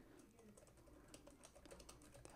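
Faint typing on a computer keyboard: an irregular run of quick key clicks as a short reply is typed.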